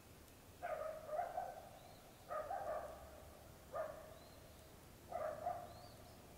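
A dog barking faintly, in four bursts about a second and a half apart. Small birds chirp faintly in between.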